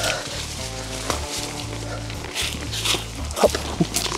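Background music with a repeating low bass line. A few short animal calls come over it shortly before the end.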